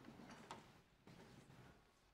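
Near silence: hall room tone with a few faint clicks, the clearest about half a second in.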